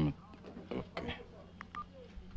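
Mobile phone keypad beeping as buttons are pressed: a few short, separate beeps.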